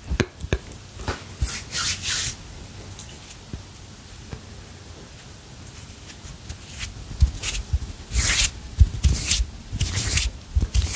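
Hands rubbing and swishing close to the microphone: a couple of sharp clicks at the start, a rubbing swish about a second and a half in, a quiet stretch, then a run of swishes and light knocks near the end.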